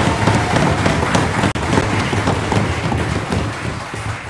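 A burst of approval from members of a parliamentary chamber: a dense clatter of many rapid thumps and claps, thinning out near the end.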